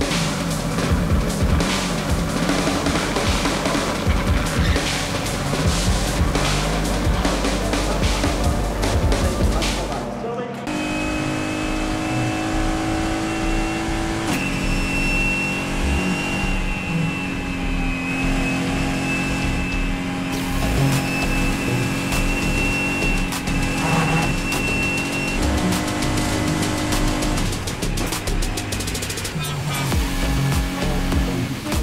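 Electronic music with a driving bass beat for about the first ten seconds, then a sudden switch to the in-car sound of a Mercedes-AMG GT race car's V8 at racing speed. The engine runs at high revs with a steady high whine over it, its note stepping several times as it changes gear.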